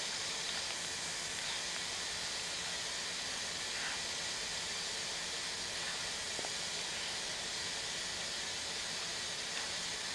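Plastic welder's air stream hissing steadily at a constant level while a bead of welding rod is laid on a plastic headlight tab.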